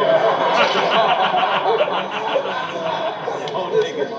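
A man laughing in quick repeated bursts over the noisy, many-voiced reaction of a crowd.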